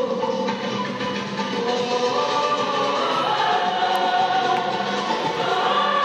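Music with a choir singing long held notes that slowly shift in pitch, at a steady level.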